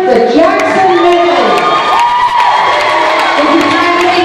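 A group of children screaming and cheering, many high voices overlapping, in excited celebration of being announced the winner.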